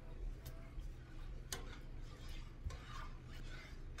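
A few light clicks and knocks of kitchen utensils, about one a second, over a steady low hum.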